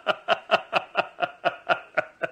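A person laughing in a long, even run of short 'ha' pulses, about five a second.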